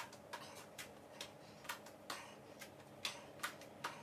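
Light taps and clicks of hands placed on a foam yoga mat over a wood floor during a walk-out exercise, about two a second and slightly uneven.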